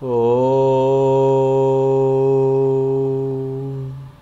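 A man chanting one long, held 'Om' at a steady pitch, the opening syllable of a Sanskrit mantra recitation. The note swells in at the start and eases off just before the end.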